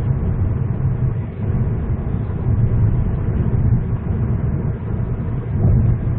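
Steady low rumble of road and engine noise heard inside the cabin of a Hyundai Avante MD cruising at highway speed.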